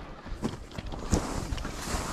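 Skis sliding and swishing through loose snow, with a few short knocks of ski poles being planted, and wind rustling on the microphone.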